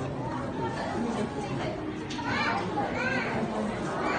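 Crowd chatter: several people talking at once, with a laugh at the start and a high-pitched voice rising and falling twice about two to three seconds in.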